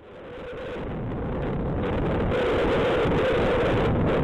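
Wind rushing over the camera microphone, with the running and road noise of a Suzuki Burgman scooter cruising at about 60–70 km/h. It fades in from silence, rising over the first two seconds to a steady level.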